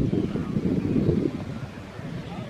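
Wind buffeting the microphone: an irregular low rumble that eases off a little past halfway.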